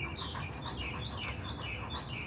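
A bird chirping over and over in short, falling notes, about three a second.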